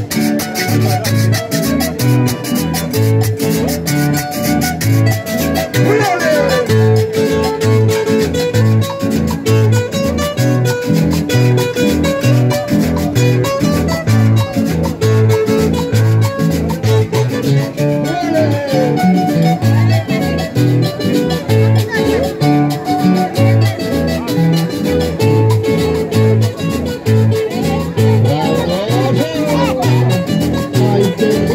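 Live Colombian música parrandera band: several strummed and picked acoustic guitars over a regular bass pulse, with a metal guacharaca scraper keeping a fast, steady rhythm. Now and then a note slides in pitch.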